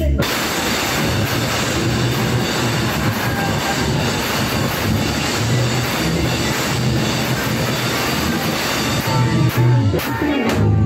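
Loud live hip-hop music through a bar's PA: a dense, noisy wash of sound over a pulsing bass line, with no breaks.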